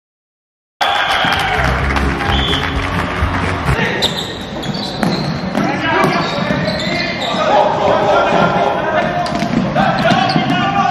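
Live floorball game sound echoing in a sports hall: players calling out over repeated sharp clicks and knocks of sticks and the plastic ball on the wooden floor. It cuts in suddenly from silence about a second in.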